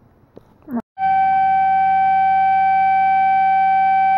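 A loud, perfectly steady single-pitched tone with a buzzy, reedy edge, like a held horn or synth note, starts abruptly about a second in after a short rising swoop and holds without wavering.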